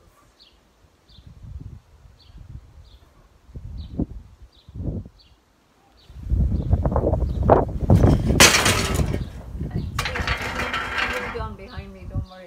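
A small bird chirping repeatedly outdoors, a short high chirp about twice a second. From about six seconds in, a loud rough noise, heavy at the low end, drowns it out until near the end.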